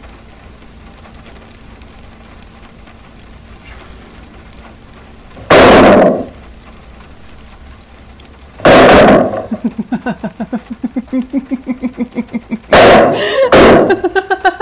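Three very loud crashing bangs a few seconds apart, each lasting about half a second. Between the second and third, a voice laughs in quick, even pulses.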